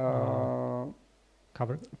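A man's voice holding a long, level hesitation sound, "uhh", for about a second, then a pause and a short syllable.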